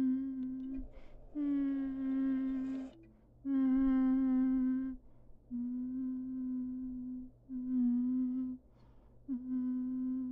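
A person humming 'mm' over and over: about six held hums of a second or so each, all at much the same pitch, with short breaths between.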